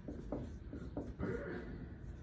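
Dry-erase marker writing on a whiteboard: a few short strokes, then a longer drawn stroke about halfway through.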